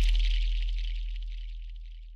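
The fading tail of a logo intro sound effect: a deep bass boom and a high hiss die away steadily.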